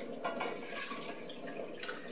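Beet juice poured from a glass measuring cup into a saucepan of vinegar and water, a steady trickle of liquid, with a light click at the very start.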